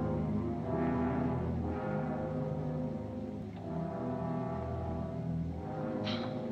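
Deep, sustained horn tones at several pitches at once, overlapping and swelling and fading every second or two.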